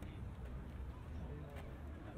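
Indistinct chatter of passersby over a steady low rumble of city background, with a few light clicks.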